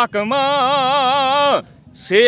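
A man singing a Punjabi song into a microphone, holding one long note with a steady vibrato for over a second before his voice drops away near the end.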